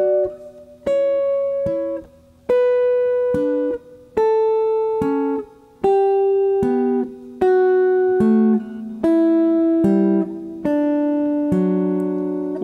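Clean semi-hollow electric guitar picking sixths as broken intervals, the higher note first and then the lower, one pair about every one and a half seconds, stepping down the scale, each note left ringing.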